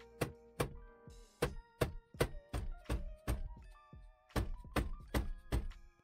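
A mallet striking the rim of a 2013 Toyota Sequoia's steering wheel, about a dozen sharp thunks in quick succession with a short pause partway, knocking the wheel to break it loose from the steering column shaft after its centre nut is off. Background music plays underneath.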